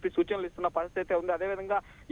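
Speech only: a man reporting in Telugu, talking without a break.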